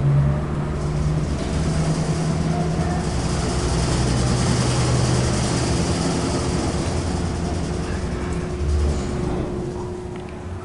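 Otis traction elevator car travelling down: a steady low hum from the drive, with a rushing hiss of air that swells in mid-ride and thins as the car slows near the end.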